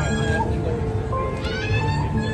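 Music playing amid a busy city sidewalk's steady low rumble, with a high, voice-like tone that glides sharply upward about one and a half seconds in.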